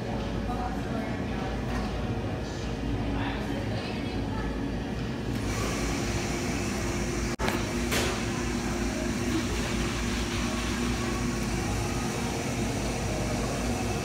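Busy coffee-shop room noise: a steady hum under indistinct chatter of other customers, with a sharp click about eight seconds in.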